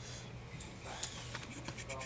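Hands rummaging among small packaged parts in a cardboard box: faint rustling and a few light clicks, one clearer about a second in, over a steady low hum. A brief murmured voice sounds near the end.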